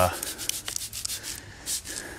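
Spray bottle misting rinseless wash solution onto a car's paint: a run of quick spritzes and small clicks, with one brighter spray hiss near the end.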